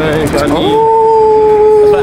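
A man's voice holding one long, loud shout on a single high pitch for about two seconds, bending down in pitch as it ends. Brief talk comes just before it.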